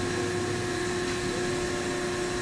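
Steady machine hum with one constant tone, unchanging throughout.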